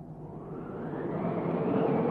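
Wind blowing and swelling into a strong gust as a cartoon storm sound effect, growing louder and brighter through the clip.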